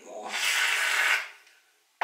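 Aerosol can of hair styling mousse spraying foam out of its nozzle in one loud hiss lasting about a second.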